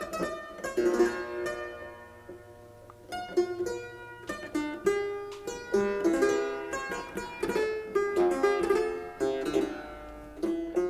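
Triple-fretted clavichord, a copy of a Leipzig instrument of about 1700, being played: a keyboard piece of single notes and chords. The music thins out into a short lull about two seconds in, then picks up again about a second later.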